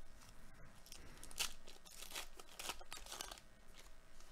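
Faint, intermittent crinkling and tearing of a baseball card pack wrapper being handled and opened by hand.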